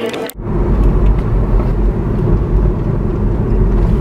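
City street noise with road traffic: a loud, steady low rumble that cuts in suddenly about a third of a second in.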